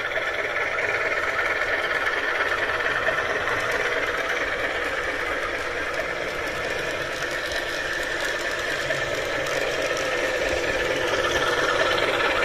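HO-scale model CC201 diesel locomotive running steadily around the track at medium throttle: a continuous mechanical running sound made of the model's motor and wheels on the rails, together with the sound controller's simulated diesel engine.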